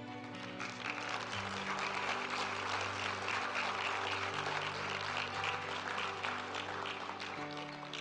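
A congregation applauding for several seconds over soft background music of held chords that change every few seconds. The applause builds shortly after the start and fades near the end.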